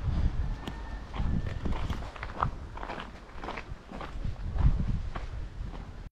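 Footsteps on a dirt-and-gravel track, about two steps a second, from someone walking with the camera, over a low rumble on the microphone.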